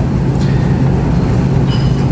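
Steady low rumble with a hum, the background noise of a conference room's recording, with no voice in it.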